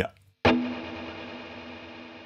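Electric guitar chord played once, about half a second in, through the Valeton GP-200LT's Matchless clean amp model with reverb just switched on; it rings out as several steady notes and slowly decays.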